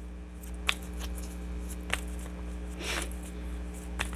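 A tarot deck being hand-shuffled, with a few short sharp card snaps and a soft riffle of sliding cards, over a steady low electrical hum.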